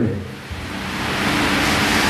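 A hiss of noise with no tone in it, growing steadily louder over about a second and a half.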